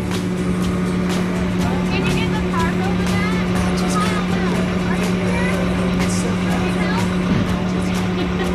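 John Deere tractor running at a steady, unchanging pitch, heard from inside its cab.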